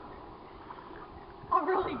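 Faint steady background hiss, then a person starts speaking about one and a half seconds in.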